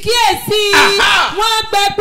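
A man's voice shouting and chanting loudly in prayer, with one long held cry about half a second in, then quick syllables.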